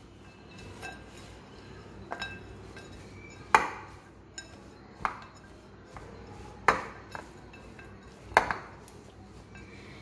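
Spatula stirring oats and nuts in a glass mixing bowl, the spatula knocking against the glass in sharp clinks every second or two; the loudest clink comes about three and a half seconds in.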